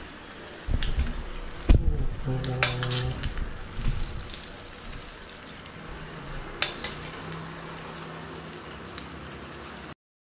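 Hot tadka oil with mustard seeds and curry leaves sizzling as it is spooned from a small tempering pan over steamed rava dhokla, with a metal spoon clinking against the pan and steel plate a few times, mostly in the first few seconds.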